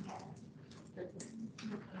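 Quiet, broken speech, a few faint words, over low room tone.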